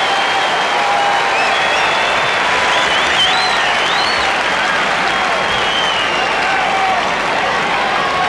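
Tennis crowd applauding steadily, with high whistle-like glides and scattered voices over the clapping.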